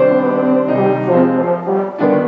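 An upright valved brass horn playing a melody of held notes, accompanied by a grand piano.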